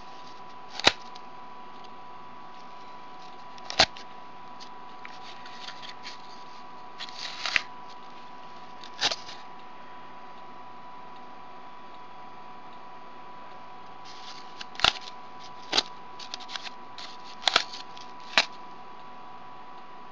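Threads being pulled into and out of the notches of a cardboard bracelet-braiding loom: a sharp snap or tap every few seconds, with rustling of fingers on the cardboard, over a steady faint hum.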